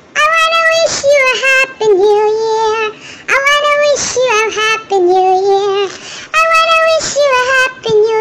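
A very high-pitched cartoon-cat voice singing, the Talking Ginger app voice, in short held phrases with brief breaks between them.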